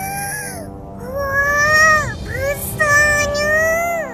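High-pitched cartoon children's voices exclaiming in wonder with long drawn-out vowels, 'Wah! Besar sekali!' ('Wow, so big!'), in several held calls over steady background music.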